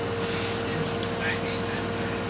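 LG direct-drive front-loading washing machine running, with a steady whine from its drive motor and a short hiss in the first half second.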